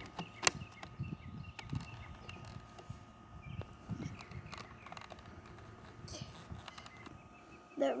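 A sharp plastic click about half a second in, then a few softer clicks and low handling noise as the parts of a Nerf Rival toy blaster are worked by hand: unlocking, pulling the bolt and opening the hopper for loading.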